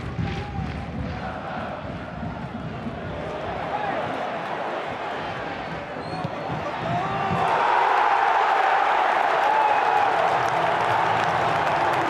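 Football stadium crowd noise that swells into a loud, sustained cheer about seven and a half seconds in as the home side scores a goal.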